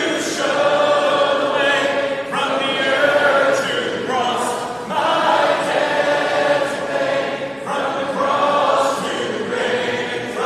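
A large crowd singing a worship song together, unaccompanied, in phrases of two to three seconds with brief breaks between them.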